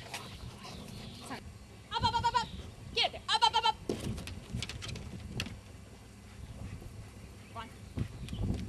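Goat bleating twice, two wavering calls about a second apart.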